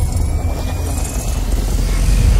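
Cinematic logo-intro sound effect: a loud, deep rumble with a faint, slowly rising whine above it.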